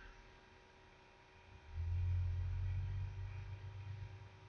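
Faint steady hum, then a low rumble lasting about two seconds that starts a little before halfway and fades near the end.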